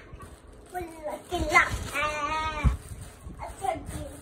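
A young girl's high voice singing without accompaniment: a few short sounds, then one drawn-out note about two seconds in, with a couple of low thumps.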